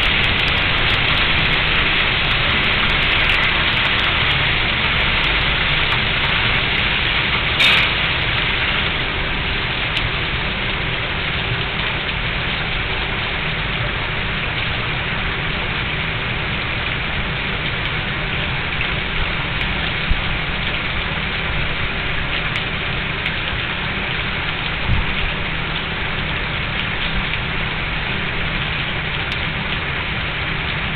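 Steady rushing noise with no clear tone, with a brief louder burst about eight seconds in and a couple of faint ticks later.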